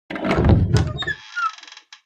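Intro sound effect of heavy double doors swinging open: a deep, bass-heavy thud lasting about a second, then a brighter shimmering sound with falling tones that fades out near the end.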